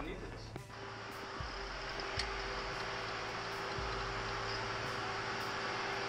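A steady mechanical hum and hiss, like a running fan, with a held low tone. There is one faint click about two seconds in.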